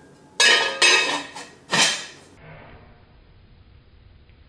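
An enamelled pot and its lid clanking three times in the first two seconds: sharp, ringing knocks of cookware.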